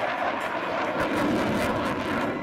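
Eurofighter Typhoon's twin jet engines running in afterburner as the fighter flies overhead: a steady, loud jet noise that grows deeper about a second in.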